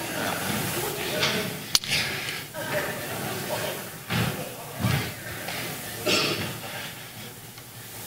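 Indistinct low voices and murmur in a large, echoing hall over a steady hiss, with one sharp click about two seconds in and a few short louder bursts of voice after the midpoint.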